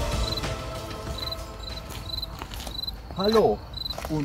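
A cricket in the meadow chirping steadily, short high chirps about two to three a second, as pitched music fades out over the first two seconds. A brief voice sound comes just after three seconds in.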